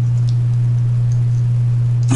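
Steady low electrical hum, one unchanging tone.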